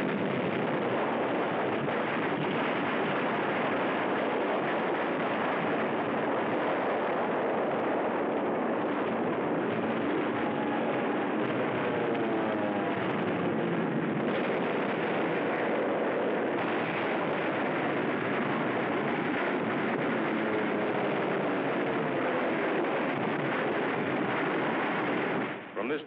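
A steady, dense roar of battle: naval and air bombardment of the shore, with gunfire and explosions running together into one continuous noise without separate distinct blasts.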